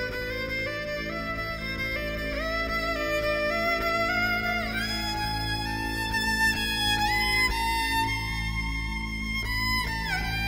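Fiddle (violin) playing an instrumental solo line over a steady low accompaniment, the bowed melody climbing in pitch in steps with slides between notes.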